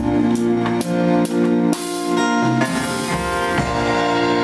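Live band playing an instrumental passage of a slow country-rock ballad: acoustic guitar, electric lead guitar, bass and drum kit, with held chords and steady drum strokes and no singing.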